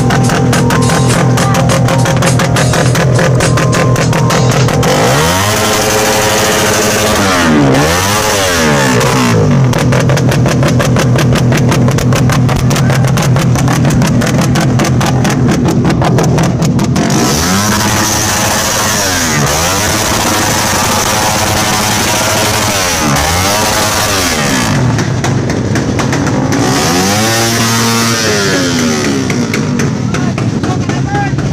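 Suzuki Raider R150 Fi motorcycle's single-cylinder engine through a loud open aftermarket exhaust pipe, free-revved several times: the pitch climbs and falls back in repeated blips, with steady running between them.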